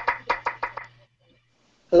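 Video-call audio breaking up: a quick run of about six knock-like clicks in under a second over a low hum, then the sound cuts out. The call's audio is muting out.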